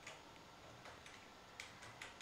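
Near silence with a few faint, short clicks of a computer mouse, two of them close together near the end.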